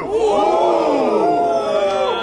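A crowd of men reacting to a punchline with a drawn-out, collective 'ohhh', many voices sliding up and down in pitch together and tailing off near the end.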